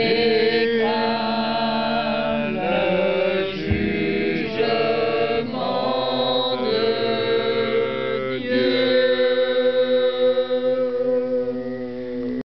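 Voices singing a slow chorale a cappella, in held chords that move to a new chord every second or two.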